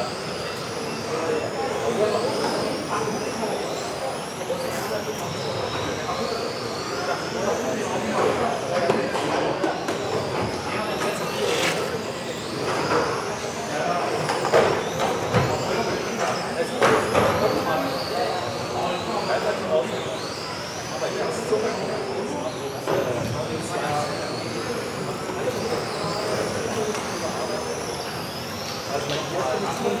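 Several electric RC touring cars racing, their motors whining at high pitch in many overlapping rising and falling glides as they accelerate and brake, over a steady murmur of voices.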